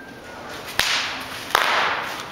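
Two sharp swishing cracks, about three-quarters of a second apart, each a sudden hit trailing off in a hiss: handling noise from a camera being swung quickly.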